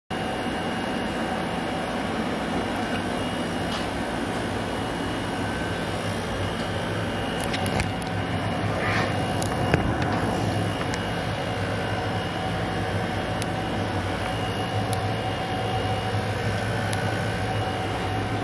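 Steady machine hum and hiss with a few faint clicks.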